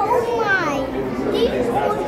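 Children's voices and chatter, with a child's high voice sweeping up and down about half a second in and again near a second and a half in.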